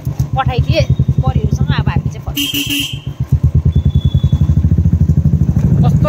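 Motorcycle engine running under way, a steady fast low throb. A short horn honk comes about two and a half seconds in.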